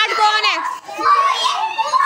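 Young children's high-pitched voices chattering loudly together as they play, with a brief lull a little before the middle.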